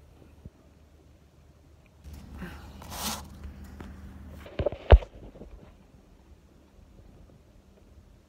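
Handling noise from a phone camera being moved and set down on a rubber gym floor: a rustle of fabric against the phone about two to three seconds in, then two knocks just before five seconds, the second much louder.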